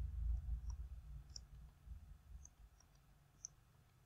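Faint, scattered clicks of a stylus tip tapping and writing on a tablet screen, about five of them, with a low rumble that fades away over the first two seconds.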